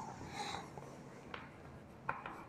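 Faint chalk on a blackboard: a short stroke, then a light tap of the chalk against the board.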